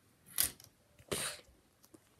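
Plastic Lego pieces scraping and clattering twice as a Lego coaster car with a monster-head front is run down its plastic track.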